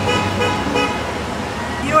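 A car horn sounding over street traffic, one steady held tone through about the first second.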